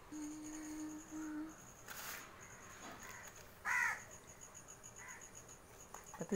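A bird calls once, briefly, a little past the middle, over a faint, rapidly pulsing high-pitched tone; a faint low hum sounds for about a second and a half near the start.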